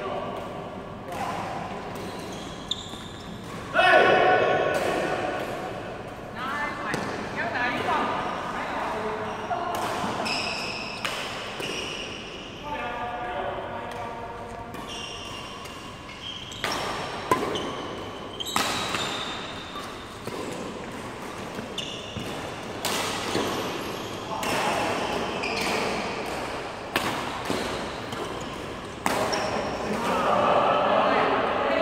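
Badminton rally in a large indoor hall: a series of sharp racket strikes on the shuttlecock, with players' voices calling out between the shots.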